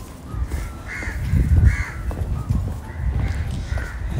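A bird calling about four times in short calls, over an irregular low rumble on the microphone that is loudest about a second and a half in.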